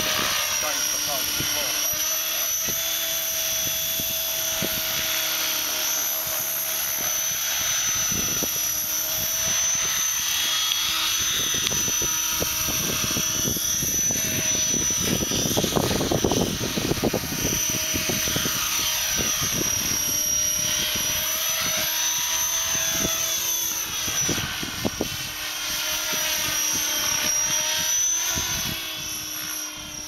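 Align T-Rex 550 3G flybarless electric RC helicopter in aerobatic flight: the high whine of its motor and rotor head with the swish of the blades, its pitch sweeping up and down as the machine manoeuvres. About halfway through it passes low and close, giving a louder rush of blade noise.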